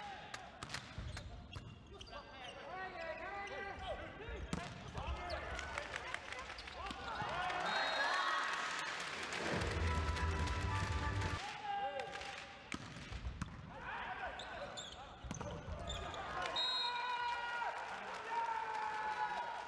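Indoor volleyball game: sharp smacks of the ball being hit and bouncing on the court, with voices and crowd cheering in the hall. The crowd noise swells loudest around the middle.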